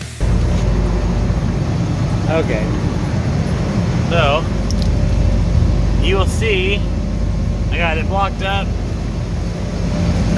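Steady low machinery drone, engine-like, running throughout, with short snatches of a man's voice about four times.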